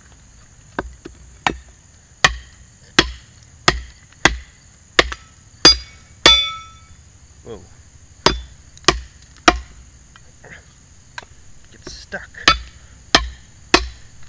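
A Cold Steel Bushman knife chopping into a wooden branch laid across a stump: about a dozen sharp chops in an even rhythm, roughly one every two-thirds of a second, with a pause after about nine seconds. One strike near the middle leaves the steel blade ringing briefly.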